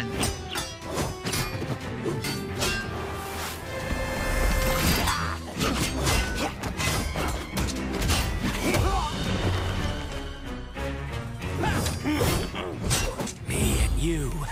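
Animated fight-scene soundtrack: fast battle music with repeated weapon clashes, hits and crashing impacts.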